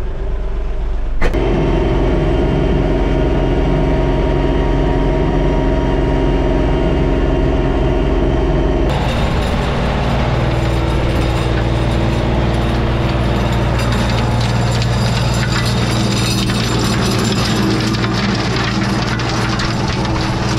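Kioti DK5310SE diesel tractor running steadily under load while pulling a PTO rototiller through the soil. It is heard from inside the cab at first, then from outside beside the tractor, with abrupt shifts in tone about a second in and again about nine seconds in.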